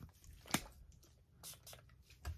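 Quiet handling noises of a small plastic spray cap and bottles: one sharp click about half a second in, then a few faint clicks.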